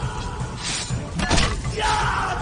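Dubbed fight-scene soundtrack: background music with a pulsing bass beat, overlaid with crashing impact sound effects, one past a third of the way in and two close together just past the middle.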